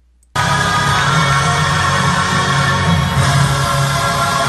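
Loud arena concert audio, music and a cheering crowd mixed together as the star walks on stage. It cuts in suddenly about a third of a second in and then holds steady.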